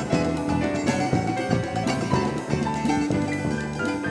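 Small instrumental band playing: a picked Brazilian mandolin (bandolim) with electric keyboard, electric bass and drum kit, in a busy rhythmic groove.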